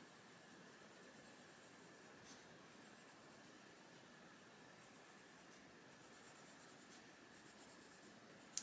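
Faint, steady scratching of a Faber-Castell Polychromos coloured pencil shading on paper.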